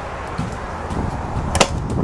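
Footsteps on a horse trailer's floor with low rumbling movement noise, and two sharp knocks or clicks close together near the end.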